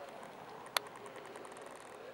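Two sharp clicks over a faint background murmur, the second louder and followed by about a second of faint, quickening high ticks.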